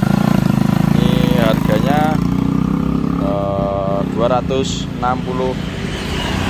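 A motor vehicle's engine running close by, loud for the first three seconds and then fading away, as from traffic passing on the road, with a man speaking over it.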